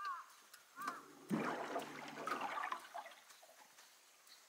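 Water splashing and trickling around a small boat, busiest from about one to three seconds in. A few short rising-and-falling chirps sound near the start.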